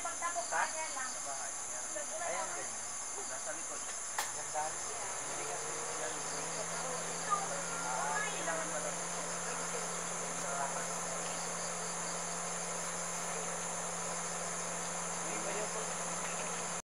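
Insects shrilling steadily in two high bands, with scattered short chirps over them. A low steady hum comes in about five seconds in.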